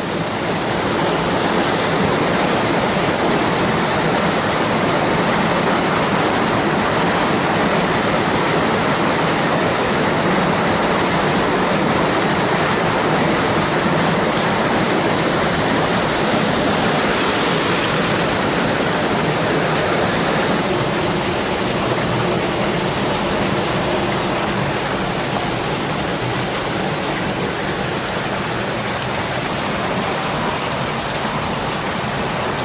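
Stream water rushing steadily through a narrow rocky channel.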